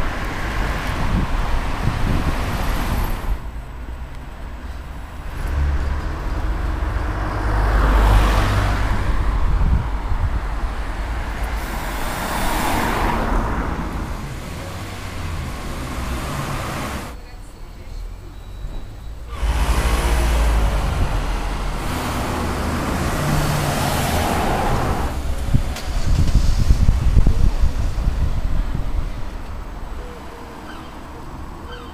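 Town street traffic: several cars pass one after another, each swelling and fading over a steady road-noise background, with a quieter lull about two-thirds of the way through.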